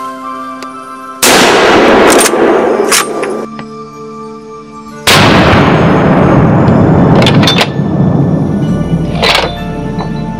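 Two loud shots from a scoped hunting rifle, about four seconds apart, each followed by a long rolling echo, over background music.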